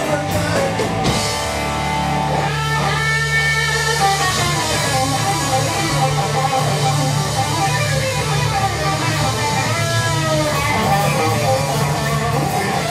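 A live rock trio playing instrumentally: an electric guitar carries a lead line with bent notes over a sustained electric bass and drums.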